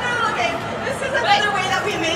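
People talking: speech and chatter, with no other distinct sound standing out.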